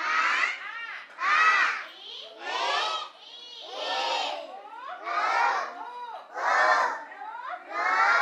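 A class of young children reciting the Telugu alphabet aloud in unison, the letters chanted in a steady rhythm, about one loud call every second and a quarter.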